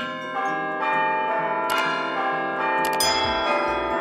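Intro sting of ringing bell chimes, one note after another entering and ringing on together. A short click sounds near the middle and another about three seconds in, where a low bass comes in.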